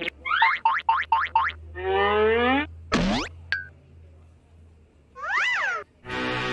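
Cartoon sound effects: about six quick rising squeaks, then a drawn-out falling tone, a fast upward zip about three seconds in, and a tone that bends up and back down near the end.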